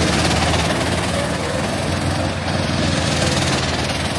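Go-kart engines running steadily as several karts drive through a corner of the circuit, an even engine drone with no break.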